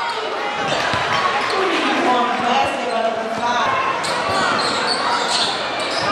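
Crowd of spectators talking and shouting over one another, with a basketball bouncing on a hardwood court.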